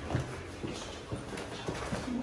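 Footsteps of people walking down a narrow hallway: a series of short, light, irregular steps.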